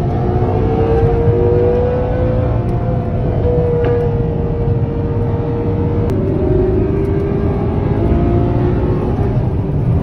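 Ferrari 812 Superfast's V12 engine heard from inside the cabin under hard acceleration, its note climbing steadily, dropping with an upshift about six seconds in, then climbing again, over loud road and tyre rumble.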